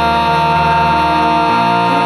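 A singer holding one long, steady note over sustained keyboard chords, with the chord changing about a second and a half in: the held note that ends a musical-theatre song.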